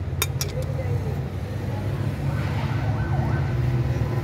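A steel bar clinks twice against the planetary gears of a tractor's planetary reduction housing early on, over a steady low droning hum.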